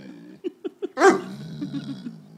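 Mastiff whining: three quick short whimpers, then a louder sharp bark about a second in, followed by a wavering whine.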